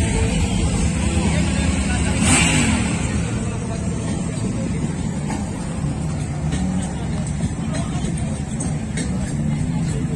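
Motorcycle engines running over the chatter of a crowd. About two seconds in, one engine swells and falls in pitch.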